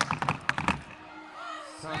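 A rapid run of sharp taps and slaps from a dancer's feet striking the stage floor, about ten a second, stopping abruptly under a second in. After it comes a recorded voice singing the song.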